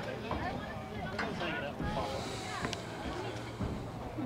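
Indistinct voices of players and spectators at a soccer match, scattered calls and chatter, with two sharp knocks, one about a second in and one near three seconds.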